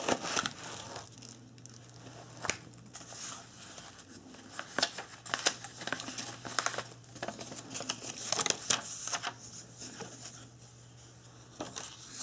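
Paper packaging crinkling and rustling in irregular bursts as a paper envelope is pulled from a padded mailer and handled, over a faint steady hum.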